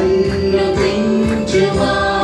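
A small worship group of women's and a man's voices singing a Telugu Christian worship song together into microphones, holding long notes.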